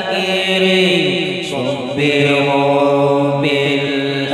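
A group of men's voices chanting an Arabic devotional poem (syair) with long held notes and sliding melodic ornaments. There are no drums.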